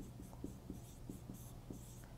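Marker pen writing on a board: a run of faint, short strokes, several a second, as handwritten characters are put down.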